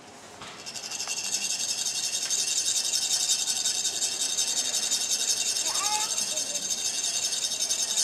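Tibetan chak-pur, a ridged metal sand funnel, rasped rapidly with a metal rod to make coloured sand trickle out. The rasping is a fast, even scraping that starts about half a second in and is the loudest sound throughout.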